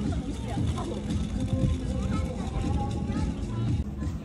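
Voices of people talking in the background over a steady low rumble.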